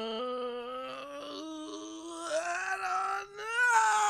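A man's long, drawn-out vocal imitation of a suspense sting: one held, groan-like note that slowly rises in pitch, breaks off briefly about three seconds in, and comes back higher.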